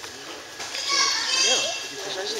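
A young child's high-pitched voice calling out close by, rising and falling in pitch for about a second, over low crowd noise.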